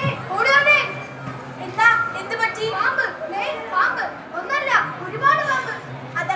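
Children's high-pitched voices shouting and calling out in quick calls that rise and fall in pitch.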